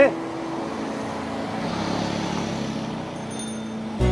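Street background with steady traffic noise and faint voices, opening with a short rising vocal sound.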